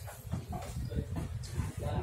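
Laughter in short, choppy bursts.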